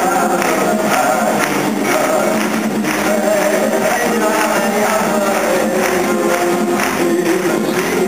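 Live band music: a man singing with acoustic guitar while drums keep a steady beat of about two strikes a second. The sound is thin and lacking bass, as heard from far back in a concert hall.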